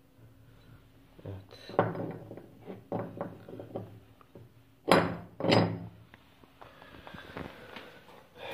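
Scooter variator parts being handled on a wooden workbench: a run of small knocks and clatters, then two louder knocks about half a second apart, about five seconds in.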